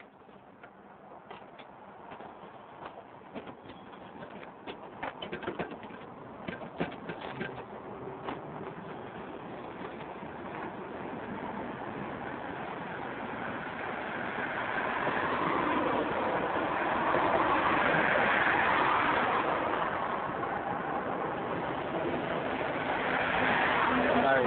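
Background noise with birds calling that builds steadily from faint to fairly loud, with scattered sharp clicks during the first several seconds.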